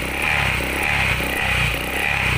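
Honda Click 125 scooter's single-cylinder fuel-injected engine idling steadily, running again after starting once the brake lever closes the brake-light starter safety switch.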